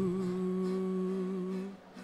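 A male singer holds one long, steady note into a microphone, wavering slightly near the end, and breaks off shortly before the next phrase.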